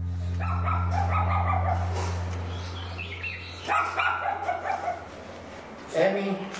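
Dogs barking repeatedly in two bouts, over a low steady hum that fades out about halfway through.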